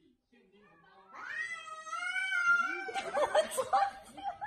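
Cat yowling: a long, high, wavering call starts about a second in and lasts about two seconds, followed by shorter broken cries near the end.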